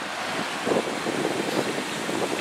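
Steady rushing noise of wind on the microphone.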